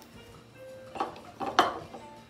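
Two clattering knocks of kitchenware being handled on a counter, about a second in and again half a second later, over quiet background music.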